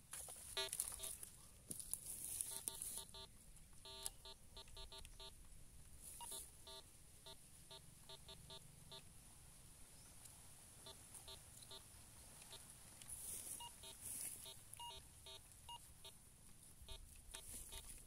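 Metal detector sounding short, repeated beeps at one steady pitch as its search coil is swept over a dug hole, the signal of a metal target still in the soil. The beeps come in two runs, the first from just after the start to about halfway, the second shortly after the middle.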